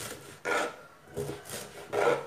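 Kitchen knife slicing through fibrous banana flower on a plastic cutting board: three separate cuts, each a short scrape ending on the board, spaced roughly 0.7 s apart.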